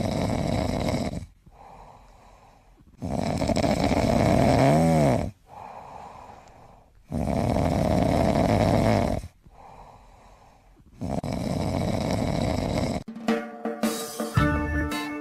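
Kitten snoring in its sleep: four long, loud snores about every four seconds with softer breaths between, the second snore carrying a short squeaky rise and fall in pitch. Music with guitar comes in about a second before the end.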